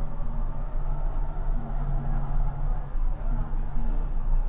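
Steady low mechanical hum with a rumble underneath, unchanging throughout.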